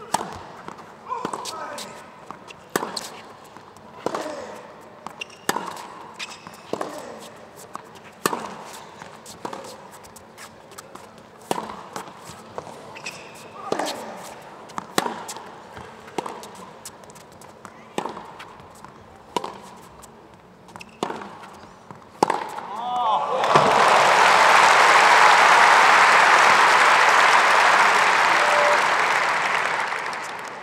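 A tennis rally: sharp racket-on-ball strikes about every second and a half. About three quarters of the way through they stop, and loud crowd applause for the winning shot takes over and fades toward the end.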